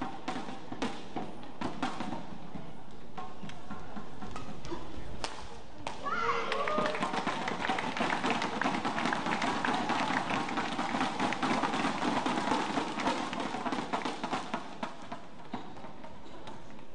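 Badminton rally: sharp racket hits on the shuttlecock and court footwork. About six seconds in, a rising shout goes up and turns into crowd cheering with rapid clapping and taps as the point is won.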